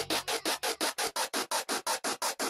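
Hardtekk electronic track in a stripped-down build-up: the bass fades out at the start, leaving a fast, even roll of hissing noise hits, about eight a second.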